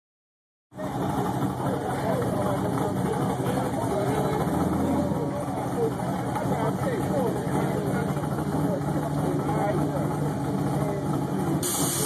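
A car engine idling steadily at a drag strip, with people talking over it; the sound starts abruptly under a second in.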